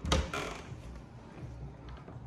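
Metal lever handle of a wooden interior door pressed down and the latch clicking, two sharp clicks in quick succession as the door is pushed open.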